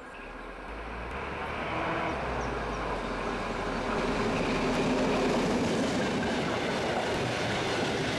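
DB V 100-class diesel-hydraulic locomotive hauling a passenger train, its diesel engine running under load with wheel and rail noise, growing louder over the first few seconds as it approaches and then holding steady.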